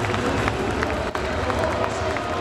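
Large arena crowd: a dense din of many voices with scattered claps.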